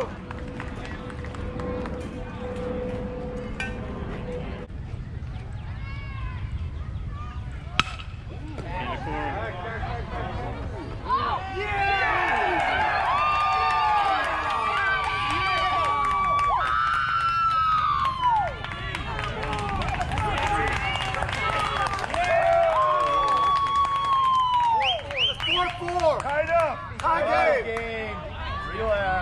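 Spectators at a youth baseball game shouting and cheering, with many overlapping yells and several long held calls, loudest in the second half. A single sharp crack comes about eight seconds in.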